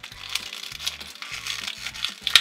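A crinkly green plastic wrapper crackling and crumpling as it is torn open by hand to unwrap a small toy figure. Background music plays underneath.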